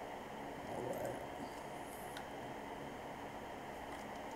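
Low, steady background hiss and hum of a room microphone, with a single faint computer-keyboard click about two seconds in.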